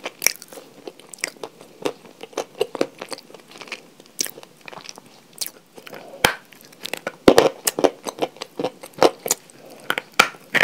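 A person biting and chewing chalk close to the microphone: a run of dry, crackly crunches, with the loudest bites bunched from about six seconds in.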